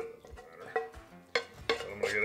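Wooden spatula scraping a cooked vegetable mix out of a frying pan into a stainless steel mixing bowl, with a few sharp knocks of pan against bowl and the bowl ringing briefly after one of them.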